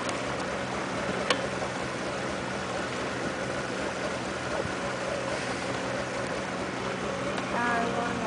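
Motorboat engine running steadily with a low, even hum, and a single sharp click about a second in.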